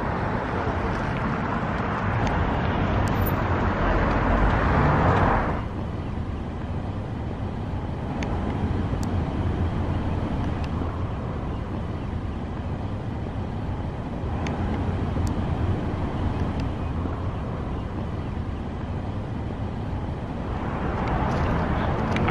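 Road traffic noise from passing cars, steady and louder for the first five seconds or so, then dropping suddenly to a lower, continuing hum.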